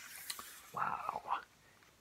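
Paper rustling as a hardcover picture book is handled and turned to face the camera, then about a second in a brief, soft murmur of a man's voice.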